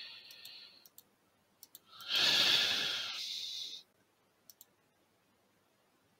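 Computer mouse clicking, several quick double-clicks, with one loud breath out lasting nearly two seconds about two seconds in.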